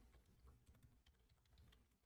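Very faint computer keyboard typing: a scatter of soft key clicks, barely above near silence.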